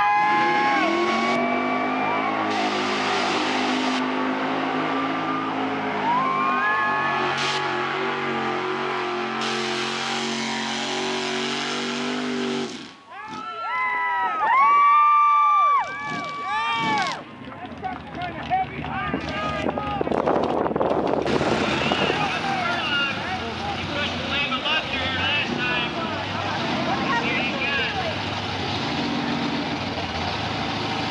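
Lifted Ford mud truck's engine running hard at high, steady revs through a mud pit for the first dozen seconds. It then drops out briefly and comes back as a few quick rev-ups and let-offs. In the last part the engine is lower, mixed with voices.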